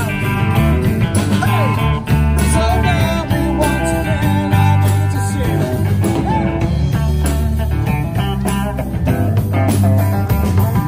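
Live rock band playing, electric guitar to the fore over drums and bass with a steady beat.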